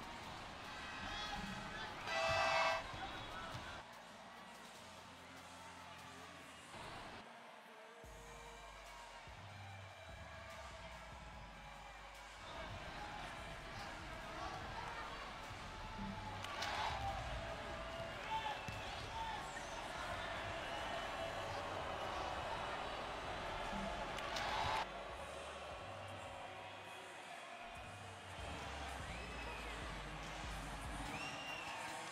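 Indoor basketball arena ambience: crowd noise with music over the public address. A short, loud horn blast sounds about two and a half seconds in.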